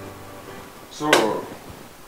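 A single sharp knock about a second in, which runs straight into a man saying "So," over faint background music.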